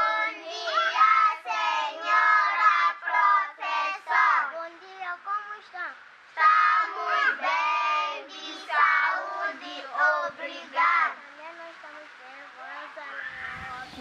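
A group of children singing the national anthem together, with a short break about six seconds in; the singing ends about eleven seconds in.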